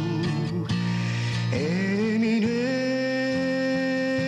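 A young man singing a slow song live over a strummed acoustic guitar. He holds notes with vibrato, slides up about a second and a half in, and then sustains one long note.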